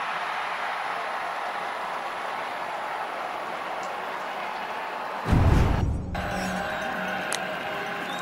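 Football stadium ambience: steady crowd noise with band music under it, a loud low boom about five seconds in, then sustained held band notes after a sudden change in the sound.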